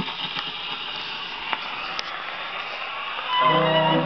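Gramophone needle set down on a 1920s Brunswick 78 rpm shellac record: a click, then steady surface hiss and crackle from the lead-in groove. About three and a half seconds in, the recorded band's introduction starts.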